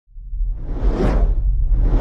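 Cinematic whoosh sound effect over a deep low rumble, rising out of silence to a peak about a second in, with a second whoosh starting at the very end.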